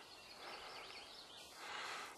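Faint outdoor ambience: a soft steady hiss, with a few faint high chirps of a distant bird in the first half.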